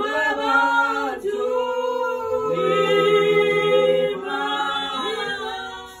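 Several voices singing together in harmony without instruments, holding long notes; the singing fades out near the end.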